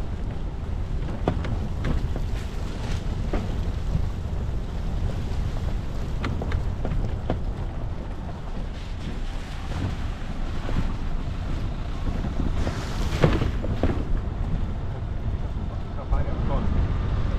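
Off-road vehicle driving slowly over a rough dirt forest track: a steady low rumble of engine, tyres and wind on the microphone, with scattered knocks and clicks from stones and bumps under the wheels and a louder crunch near the end.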